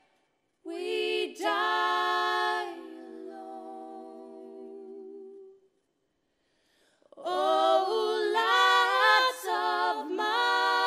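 Three female voices singing an English folk song a cappella in harmony, on long held notes. About three seconds in they drop to a softer held chord, stop for about a second and a half, then come back in loudly.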